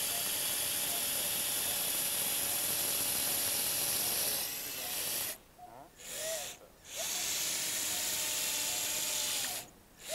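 Surgical power drill driving a guide wire into bone, running steadily for about five seconds, stopping abruptly, giving a short burst, then running again for a few seconds before stopping near the end.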